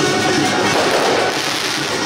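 A string of firecrackers crackling continuously over loud procession music, whose steady wind-instrument tones run through the crackle.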